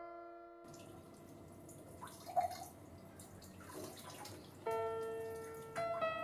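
Water dripping at a kitchen sink, with one clear plinking drop about two and a half seconds in, over faint room noise. Sparse piano notes come in near the end.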